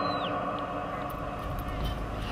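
Low outdoor background noise of a gathering, with faint distant voices.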